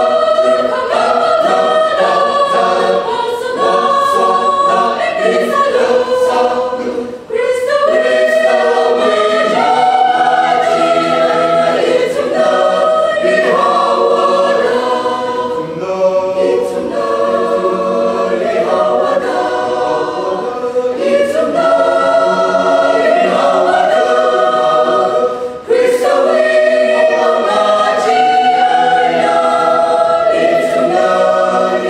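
Mixed choir of men's and women's voices singing a sacred song in parts, with short breaks for breath about seven and twenty-five seconds in.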